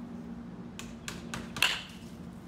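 A baseball bat squarely hitting a front-tossed ball: one sharp crack about a second and a half in, after a few light clicks, marking a well-hit ball. A low steady hum runs underneath.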